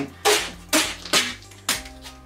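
Duct tape being pulled off the roll in short ripping pulls, four in quick succession about half a second apart.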